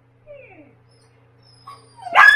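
A Siberian husky in labor gives one faint whimper that falls in pitch, about a quarter second in, as she strains to deliver a lodged puppy.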